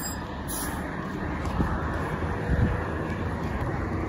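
A shuttle bus driving slowly past at close range, with a steady low engine hum and tyre noise on the road.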